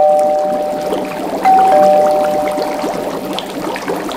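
Two-tone 'ding-dong' doorbell chime rung twice, each high note followed by a lower one and left to fade. Underneath is a steady bubbling, trickling wash from dry ice fizzing in the cauldron.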